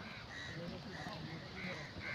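Faint outdoor bird calls: a few short calls repeated about every half second.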